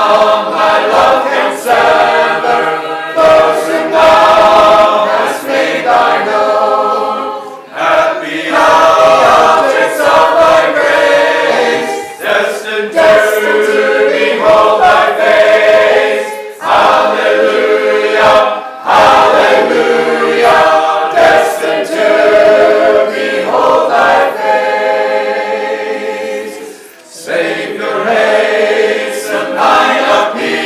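A church congregation singing a hymn together a cappella, with no instruments, in lines separated by brief pauses.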